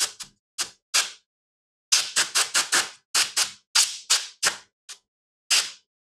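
Quick, sharp wiping strokes on the metal lid of a CPU as old thermal paste is rubbed off. About twenty short strokes come irregularly, bunched fastest in the middle.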